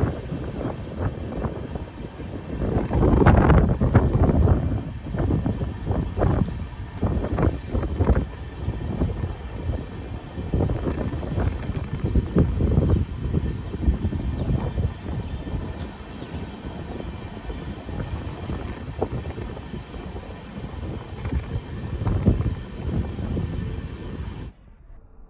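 A passenger train running along the line, heard from on board. Heavy, gusty wind buffets the microphone and comes and goes in uneven surges.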